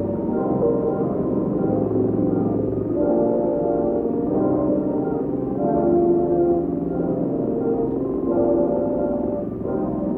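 Background music from a 1950s film, heard muffled as if from a television in the next room: slow, sustained chords with no speech.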